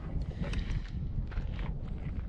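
Wind rumbling and buffeting on the microphone, with faint rustling.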